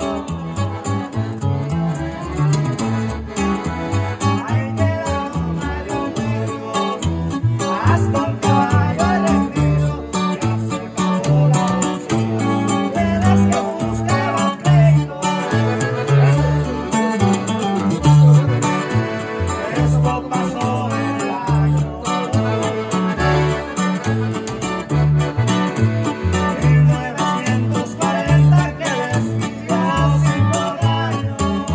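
A live norteño trio playing: button accordion, bajo sexto and upright bass (tololoche), with the bass plucking an even, bouncing line of low notes.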